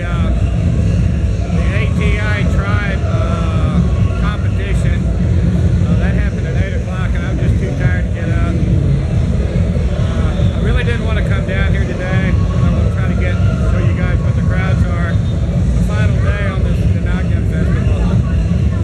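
Loud outdoor street din: a heavy, steady low rumble with voices coming and going over it.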